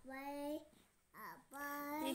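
A young girl chanting in a sing-song voice, drawing out the alphabet letters she is pointing at into long held notes with a short syllable between them.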